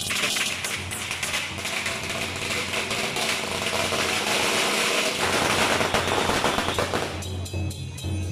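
A long string of firecrackers going off in a rapid, continuous crackle, thinning out and stopping about seven seconds in.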